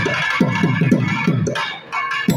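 Thavil drumming in a thani avarthanam percussion solo: fast sharp cracks from the finger-struck head over deep stick strokes that drop in pitch, several strokes a second.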